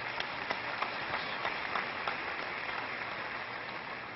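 Congregation applauding: a steady wash of many hands clapping.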